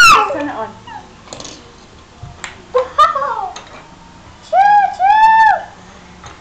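People's voices: a loud falling exclamation at the start, a short vocal sound about three seconds in, and two held, sung-out notes near the end.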